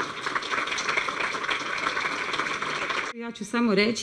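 Audience applauding, a dense patter of clapping that cuts off abruptly about three seconds in, followed by a woman starting to speak into a microphone.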